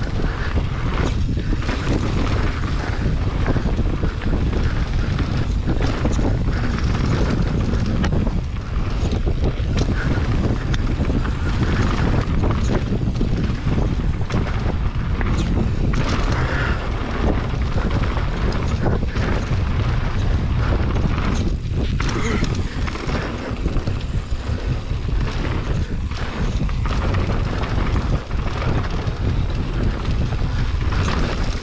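Wind buffeting an action camera's microphone on a fast mountain-bike descent, mixed with tyre noise on the dirt trail and many short knocks and rattles of the bike over bumps.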